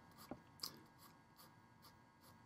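Faint scratching of a graphite pencil making short hair strokes on drawing paper, about six quick strokes in a row.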